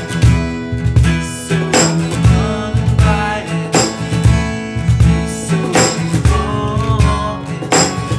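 Instrumental passage of strummed acoustic guitar chords with a cajon keeping the beat: frequent deep thumps and a brighter slap about every two seconds.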